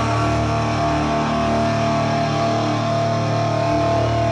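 Live rock band playing loud distorted electric guitar and bass, holding sustained notes that ring steadily.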